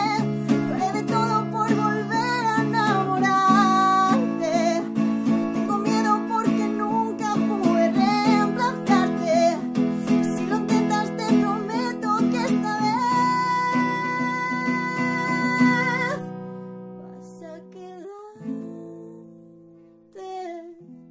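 A woman singing a Spanish pop ballad to her own acoustic guitar strumming, ending on a long held note. The strumming then stops, and a last strummed chord rings and fades near the end.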